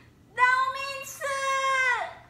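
A woman shouting through cupped hands: two long, high-pitched held calls back to back, starting about half a second in, with a brief break between them.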